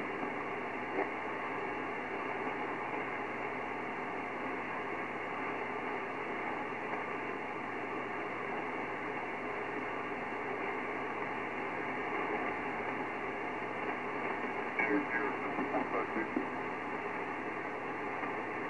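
Kenwood TS-950SDX HF transceiver receiving an idle upper-sideband aeronautical channel: a steady hiss of shortwave static, cut off above the voice range by the receiver's narrow filter. A weak, broken voice comes faintly through the noise near the end.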